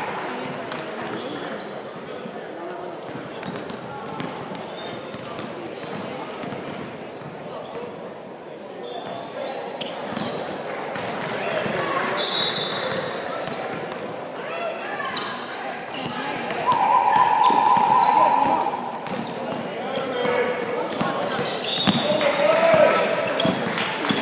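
Indoor basketball game: voices of players and spectators in a large echoing gym, with short sneaker squeaks and ball bounces on the hardwood court. About 17 seconds in, a scoreboard horn sounds steadily for about two seconds, and a referee's whistle sounds near the end.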